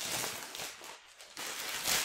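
Clear plastic wrap crinkling and rustling as it is pulled off a golf iron, in two stretches with a short pause about a second in.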